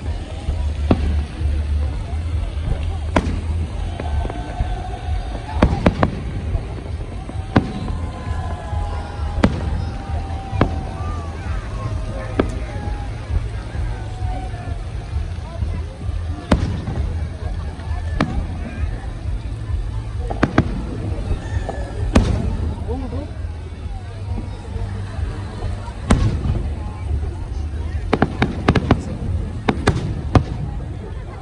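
Aerial firework shells bursting at a distance: single sharp bangs every second or two, with a quick run of several bangs near the end.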